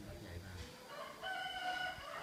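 A bird's call: one long, held, pitched note in the second half.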